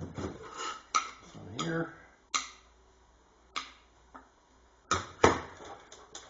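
Glass washer jar and its metal fittings from a 1947 Cadillac vacuum-operated windshield washer clinking and knocking as they are handled on a workbench. The knocks are sharp and separate, about five of them, and the loudest comes about five seconds in.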